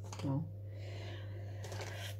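A woman says "no", then a steady low hum runs under faint light taps and scrapes of cookies and a knife being handled on a metal baking tray.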